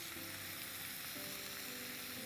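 Cubes of bottle gourd (lauki), just drained of their soaking water, sizzling steadily in hot oil in a non-stick pan.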